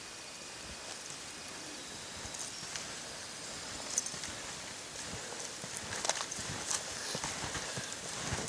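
Footsteps crunching through deep snow on improvised snowshoes made of alder sticks and spruce boughs, in a slow walking rhythm that grows louder as the walker comes closer.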